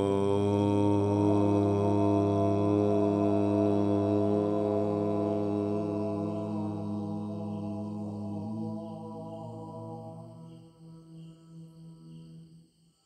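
A single deep voice chanting one long, sustained "Om" at a steady pitch. The open vowel closes into a hum about eight and a half seconds in, then fades out unevenly near the end.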